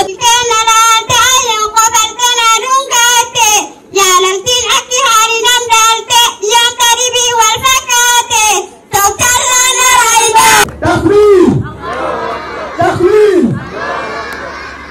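Girls' voices singing together into a handheld microphone, the melody in short repeated phrases. About ten and a half seconds in the singing breaks off and a looser mix of voices and crowd noise follows.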